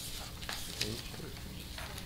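Papers rustling and small handling clicks near a desk microphone, with a faint low voice murmuring briefly about a second in.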